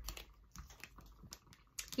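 Tarot cards being handled and dealt onto a mat-covered table: a string of soft clicks and taps as cards are drawn from the deck and laid down.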